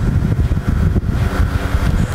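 Low, irregular rustling rumble of a clip-on microphone picking up handling and clothing rub as a PCP air rifle is held and shifted.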